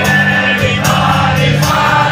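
Live music: a man singing into the microphone over an acoustic guitar, with other voices singing along.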